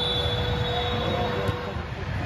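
Hall ambience at a basketball game: a steady low rumble of the big room, with a held tone that stops near the end and a faint high whistle fading out about a second in.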